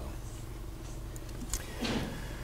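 Room tone in a pause of speech: a low steady hum, with a faint click about one and a half seconds in.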